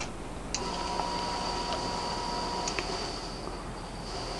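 A smoke generator switching on with a click, then a steady high whine for about two seconds over a thinner, higher whine that carries on, with a few light ticks, as it starts puffing white smoke.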